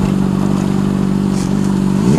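A Honda CBR600RR's inline-four engine running at a steady cruising speed, holding one even note with no revving, over a rush of wind noise from riding.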